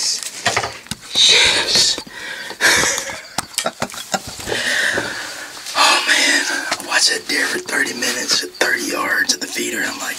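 A man talking close to the microphone, his words not made out.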